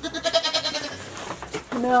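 A Nigerian Dwarf goat bleating once, a high, quavering call lasting about a second.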